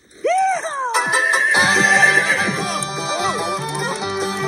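A horse whinnies, a short wavering call that rises and falls, then music with sustained notes and a steady low beat begins about a second in and carries on.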